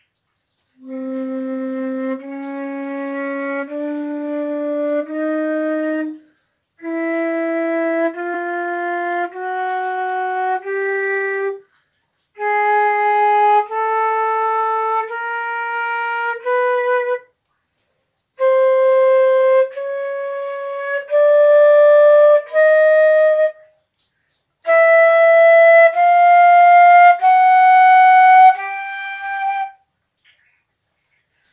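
Concert flute playing an ascending chromatic scale starting on low C, one held note about a second long after another, each a step higher. The notes come in five short runs of five or six notes with brief pauses for breath between them.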